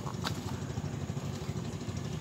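A motor engine running steadily with a low, even rumble.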